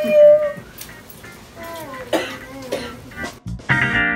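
A baby's voice making short drawn-out vocal sounds, loudest just after the start. About three and a half seconds in, strummed guitar music begins.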